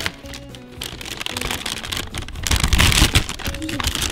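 Mylar storage bag crinkling and rustling as hands pull it open inside a plastic bucket, loudest about two and a half to three seconds in, over background music.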